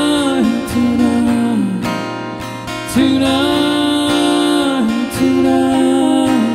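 Solo live country music: an acoustic-electric guitar strummed steadily under a man's voice singing long held notes, each about two seconds and bending down as it ends.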